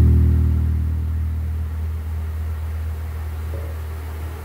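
Yamaha RBX375 five-string electric bass: a low chord tapped on the fretboard with both hands, piano style, ringing out and slowly fading, with a soft higher note near the end.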